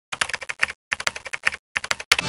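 Computer keyboard typing: rapid keystrokes in three quick runs with short pauses between them.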